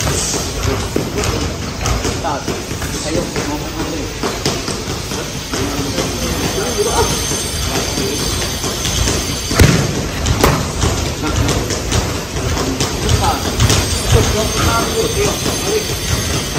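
Boxing gloves hitting focus mitts now and then, with two sharp smacks about ten seconds in, over constant background noise and indistinct voices.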